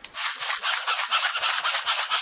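Cockatiel making a loud, fast, raspy chatter of quick scratchy pulses with no clear whistled notes or words.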